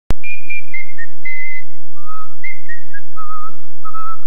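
A person whistling a slow tune in clear single notes that step downward in pitch, ending on a longer wavering note. A sharp click comes as the sound starts.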